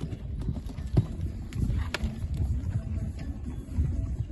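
Horse cantering on sand arena footing, its hoofbeats coming in a running rhythm, with a sharp click about a second in.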